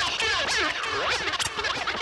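Turntable scratching: a vinyl record is worked back and forth under the DJ's hand, giving rapid pitch sweeps that rise and fall several times a second.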